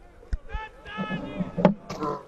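A sharp knock from a cricket ball about one and a half seconds in, as the batsman swings and the ball goes right through him, likely onto the stumps. Raised voices from players and crowd come just before the knock.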